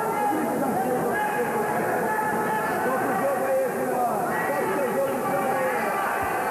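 A crowd of spectators talking and calling out over one another in a steady, unbroken babble of voices.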